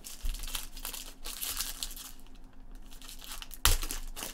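Plastic wrappers of trading card packs crinkling as they are handled, with one sharp knock near the end.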